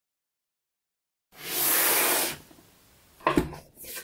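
A smooth hissing swish about a second long, then a single sharp knock a little after three seconds in.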